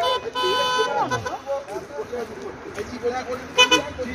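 A vehicle horn: one steady toot of about a second, then a second, shorter toot near the end.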